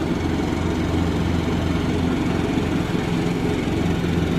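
Craftsman riding lawn mower's engine running steadily at one speed as the mower drives across the lawn cutting grass.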